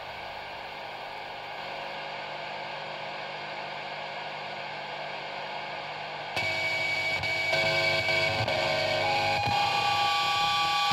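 Quiet ambient stretch of a metal album between loud passages: a steady hissing hum with faint held tones. About six seconds in, soft sustained notes come in and move from pitch to pitch, a little louder.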